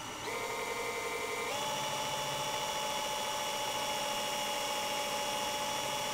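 Cordless drill running steadily while spinning a small abrasive wheel, with a screwdriver tip held against it for regrinding. The motor whine steps up in pitch once, about a second and a half in, as the speed increases, then holds.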